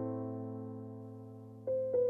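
Background piano music: a held chord fading slowly, then new notes struck near the end.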